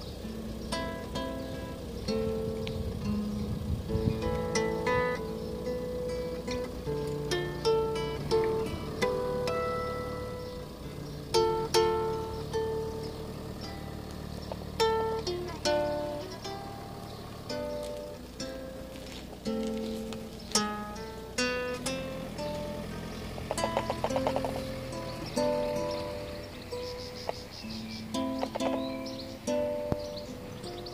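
Solo acoustic guitar played fingerstyle: a slow melody of single plucked notes and chords, each ringing and dying away, with a brief quick run of repeated notes about two-thirds of the way through.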